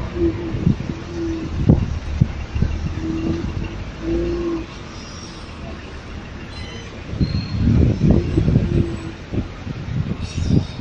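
Street traffic noise: a low rumble with a steady hum that comes and goes, and frequent short low bumps on the microphone.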